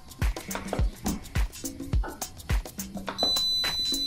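Background music with a steady beat. About three seconds in, a Hamilton Beach Temp Tracker slow cooker gives one long, high electronic beep as its timer is set to two and a half hours on high.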